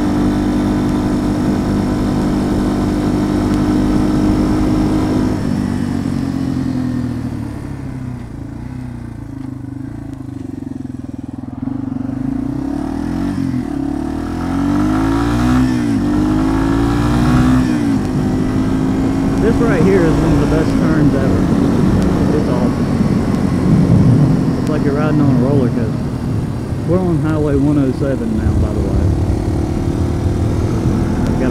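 Yamaha TW200's air-cooled single-cylinder four-stroke engine running as the bike is ridden. It holds a steady note at first, drops in pitch and level as the bike slows about a third of the way in, then rises and falls with the throttle through the second half.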